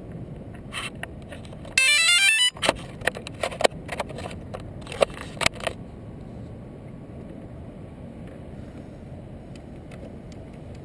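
DJI Phantom quadcopter powering up on the ground: a loud, quick run of stepped electronic beeps about two seconds in, followed by a few seconds of shorter beeps and clicks. The propellers are not spinning.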